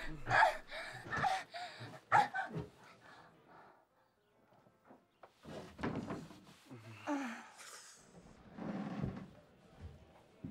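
Wordless human vocal sounds in short bursts, with a quiet pause about four seconds in before they resume.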